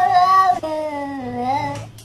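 Domestic cat yowling to be let into a room: a loud, drawn-out meow in two parts, the second lower and longer.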